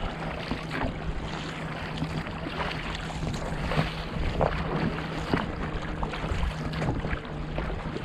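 Sea water slapping and splashing against a rowed inflatable dinghy, with wind on the microphone. A steady low hum runs under it and stops near the end.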